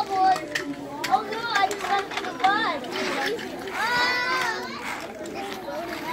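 Young children's voices chattering and calling out as they play, with one longer high call about four seconds in, and a few sharp clicks.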